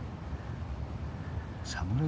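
Low, steady outdoor rumble with no distinct events; a man starts speaking just before the end.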